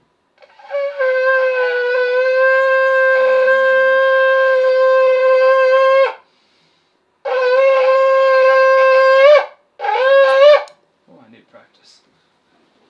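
A shofar is blown in three blasts. The first is a long steady note of about five and a half seconds. The second lasts about two seconds and bends up in pitch at its end, and a brief third blast also rises at the end.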